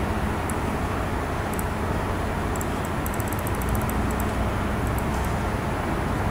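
Steady background hum and hiss of room noise picked up by the recording microphone, with faint scattered light clicks.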